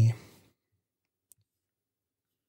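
A spoken phrase trails off, then near silence with one faint, short click a little over a second in.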